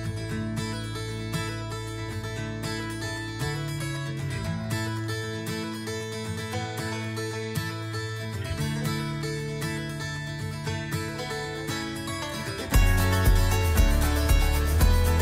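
Upbeat background music led by plucked acoustic guitar. Near the end it gets louder and a steady beat comes in.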